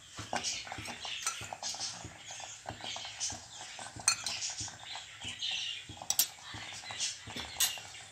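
A wooden spatula stirs thick kodo millet sweet pongal in a pressure cooker pot, with irregular clinks and knocks of a steel spoon against a steel bowl as ghee is spooned in.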